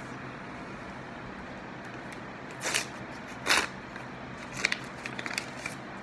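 A paper envelope being torn open, with two short rips a little under a second apart, then a run of paper crackles near the end as the card is handled.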